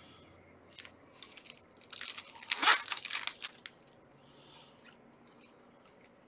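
Trading cards and a foil pack wrapper being handled: a few light clicks, then a crinkling, tearing rustle about two seconds in that lasts about a second and a half.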